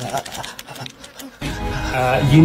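A fast buzzing run of rapid clicks. About one and a half seconds in, bass-heavy music starts.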